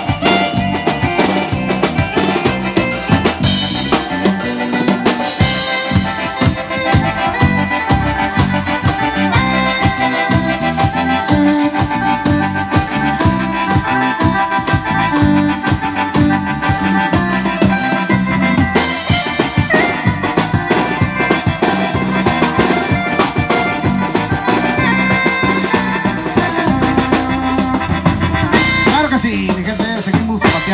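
Live band music with no singing: electronic keyboards playing an organ-like lead over a steady drum beat.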